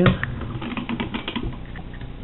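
Quick, irregular clicks and scratches of a razor blade working at the edge of soft, half-cured body filler (Bondo). The clicks thin out towards the end.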